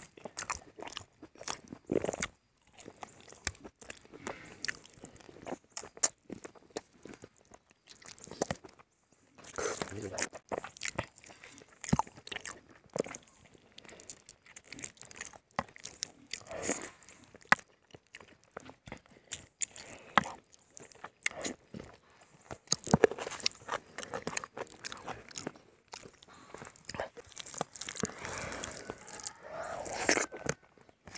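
Close-miked eating sounds of a person biting into a chicken leg and eating rice and curry by hand: irregular bites and chewing throughout, with brief pauses about 9 and 26 seconds in.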